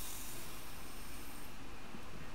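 Dry couscous grains poured from a glass into water in a silicone steam case: a steady soft hiss of falling grains that stops about a second and a half in.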